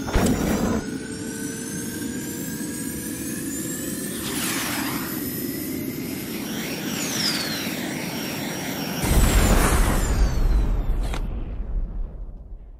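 Rocket sound effect for an animated intro: a steady rocket rumble under gliding whistling tones, with a swoosh about four seconds in. About nine seconds in it gives way suddenly to a louder, deep rumble that fades out near the end.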